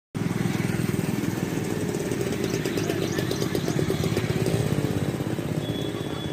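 A small engine running steadily, with a rapid, even pulse.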